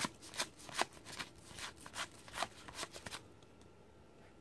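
Pro Set football trading cards being flipped through by hand, one card after another, each card giving a short cardboard flick, about three a second, stopping about three seconds in.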